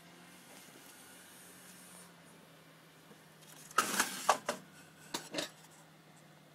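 A clear plastic storage drawer of chatterbait lure heads being handled, the plastic and the metal hooks clattering in two short bursts of clicks, about four and five seconds in, after a few seconds of faint room tone.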